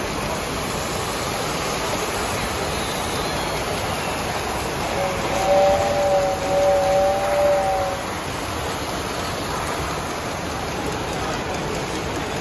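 A model train whistle blows for about three seconds, starting about five seconds in: two wavering tones sounding together. Behind it is a steady background din.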